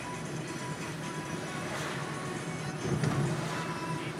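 Steady engine and road noise inside a moving car's cabin, with music playing over it and a brief louder swell about three seconds in.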